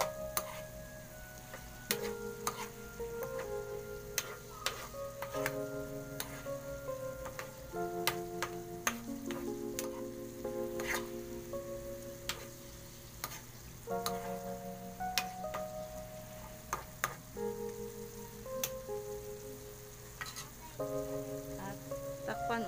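A spatula stirring chicken and chilies in a sizzling pan, with sharp clicks and scrapes of the spatula against the pan throughout. Background music with held notes changing every second or two plays over it.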